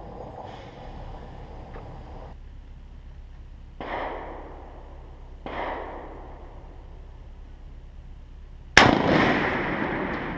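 Three rifle shots on a range: two fainter ones about four and five and a half seconds in, then a loud, close one near the end whose report trails off over about a second.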